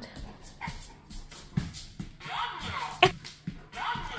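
A large dog moving about on a hardwood floor, with several sharp clicks and taps of its claws and paws spread through the few seconds.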